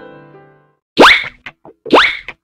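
Soft piano chords fade out, then two quick, loud cartoon 'bloop' sound effects, each a fast upward sweep in pitch, about a second apart.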